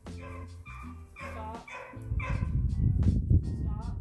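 A border collie puppy barking several times in quick succession over background music; the barks fall in the first half, and a louder low rumble follows.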